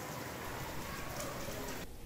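Steady rain falling, an even hiss, cutting off suddenly just before the end.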